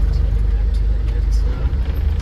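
Light truck's engine running as the truck rolls slowly, heard from inside the cab as a steady low rumble.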